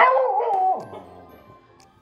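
Corgi giving a short, wavering howl that falls in pitch and ends about a second in.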